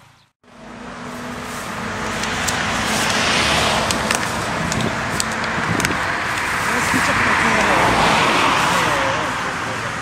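Road traffic passing close by: cars going past on the road, their tyre and engine noise swelling up and easing off again near the end.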